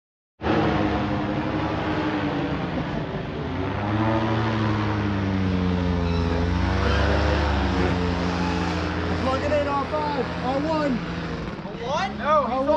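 Engine drone of a powered paraglider (paramotor) flying overhead, its pitch slowly rising and falling. People can be heard talking over it in the last few seconds.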